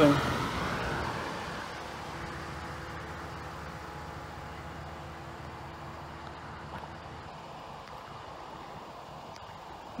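A car passing on the road and fading away over the first two seconds, followed by a faint, steady outdoor background.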